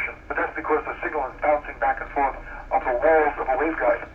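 Speech: a person talking continuously, with a narrow, radio-like sound.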